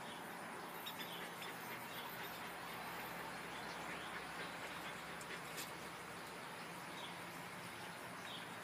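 Faint steady outdoor background noise with a few soft, short clicks.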